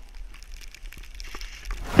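Skis sliding through deep powder snow with faint crunching, over a steady low wind rumble on a helmet-camera microphone.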